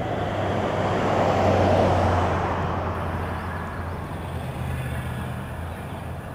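A car passing close by on a street: its road noise swells to a peak about two seconds in, then fades away, over a steady low rumble.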